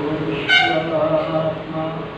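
A man's voice chanting a Sanskrit verse in long, held notes, the loudest entering about half a second in.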